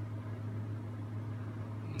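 A steady low hum with faint room noise, unchanging throughout.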